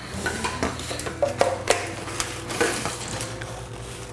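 Black ABS plastic drain pipe and P-trap fittings handled and pushed together in a dry fit: irregular clicks and knocks of hard plastic on plastic.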